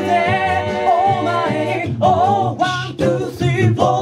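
Male a cappella group singing in close harmony over a sung bass line. A chord is held for about two seconds, then the voices break into shorter, rhythmic phrases.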